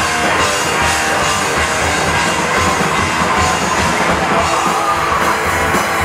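A band playing a heavy rock song live, loud and dense, with distorted electric guitar and a drum kit.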